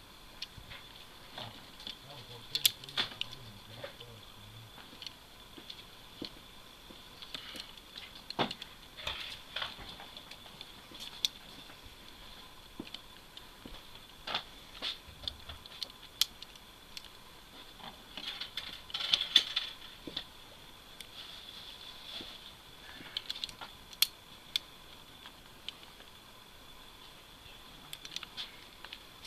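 Scattered light clicks and small knocks from a Colt 1860 Army cap-and-ball revolver being handled as lead balls are loaded into its cylinder chambers, with a busier run of clicks a little past the middle.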